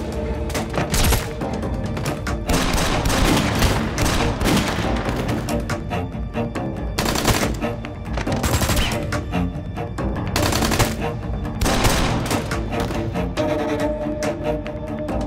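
Repeated gunshots and bursts of automatic gunfire over a dramatic music score.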